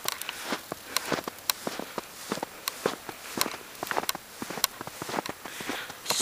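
Footsteps crunching in fresh snow: a continuous run of short, irregular crunches and clicks at walking pace.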